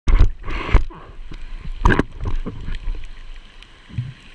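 Underwater sound picked up by a camera in its waterproof housing: water moving over the housing with irregular muffled knocks and bumps, loudest in the first two seconds and dying down towards the end.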